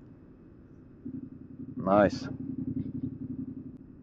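Yamaha MT-07 motorcycle's parallel-twin engine idling in neutral, a low steady rumble that comes up about a second in.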